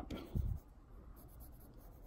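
Pencil scratching faintly on sketchbook paper while a figure is drawn, with a soft low thump about half a second in.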